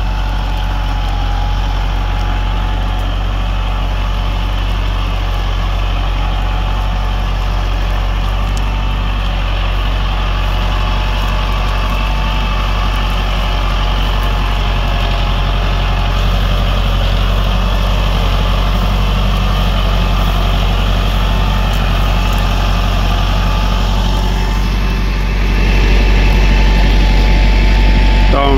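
Lamborghini 874-90 Turbo tractor's diesel engine running steadily under load while pulling a reversible plough through the soil. A heavier low rumble comes in near the end.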